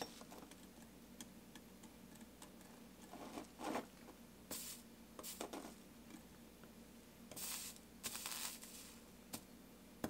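Faint handling sounds of soldering stained glass: a few short rustles and hisses as the soldering iron is picked up and its tip is worked onto the fluxed, copper-foiled seam, over a low steady hum.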